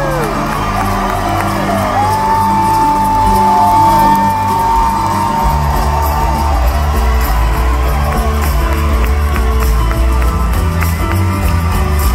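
A full band plays live through a large PA in a hall, with bass and drums throughout and a high note held for several seconds about two seconds in. The crowd whoops and cheers over the music.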